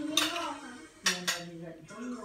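Steel knife and fork clinking and scraping against a glass plate while cutting a roast capon leg. There are sharp clinks just after the start and two more a little after a second in.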